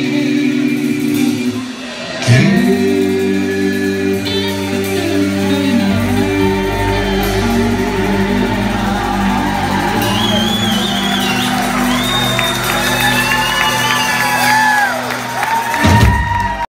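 Live rock-and-roll band holding a long, sustained chord at the end of a song, with singing and shouts over it. The sound dips briefly about two seconds in, then comes back fuller.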